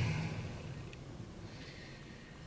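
Quiet room tone, a low steady hiss, as a man's voice trails off at the start, with a single faint tick about a second in.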